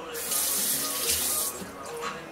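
Water running from a tap, a loud hiss that starts just after the beginning and stops about a second and a half in, with background music underneath.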